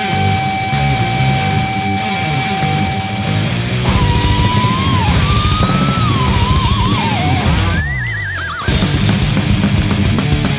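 Thrash metal track with a full band playing. From about four seconds in an electric guitar lead plays bending notes with vibrato, climbing higher with wide vibrato as the band drops out briefly, before the full band comes crashing back in just before the nine-second mark.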